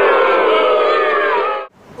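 Many voices hold one long note together, drifting slightly down in pitch, then cut off abruptly near the end.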